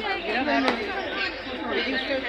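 Chatter of several people talking over one another, with a short sharp click about two-thirds of a second in.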